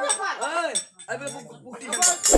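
A performer's voice speaking in a rising-and-falling, sing-song delivery, with light metallic clinks in the background.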